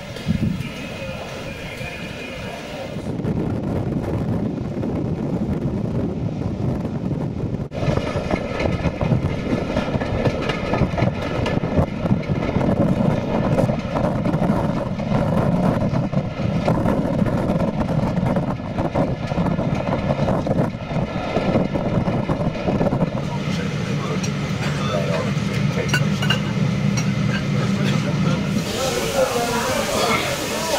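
Voices of people chatting on a station platform, then the running noise of a train hauled by a Black 5 steam locomotive, growing louder about three seconds in and settling into a steadier low drone near the end.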